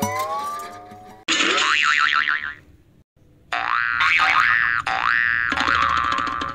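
Edited-in cartoon sound effects: a rising whistle-like tone fading out in the first second, then a warbling effect, a brief pause, and from about three and a half seconds a run of short effects with repeated upward pitch sweeps.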